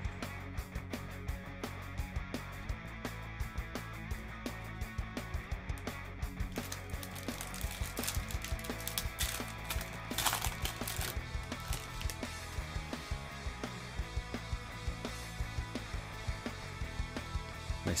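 Background music plays under many light clicks of glossy trading cards being flicked through in the hand. About ten seconds in there is a short crinkling rip of a foil card pack being torn open.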